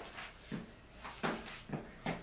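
A handful of short, soft knocks and scuffs at uneven spacing, about five in two seconds: a person shifting their footing on a gym floor while handling a kettlebell.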